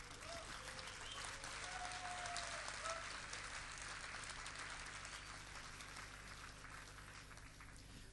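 Audience applauding: a crowd's clapping that swells over the first couple of seconds and then slowly dies away.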